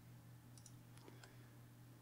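Near silence with a few faint computer mouse clicks, scattered about half a second to a second and a quarter in, over a low steady electrical hum.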